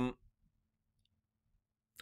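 Near silence after the tail of a man's drawn-out "um", with one faint click about a second in.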